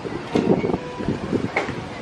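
Crowd ambience of people walking and talking nearby, with snatches of voices about half a second in and again near the end, over a steady rumble of wind on the microphone.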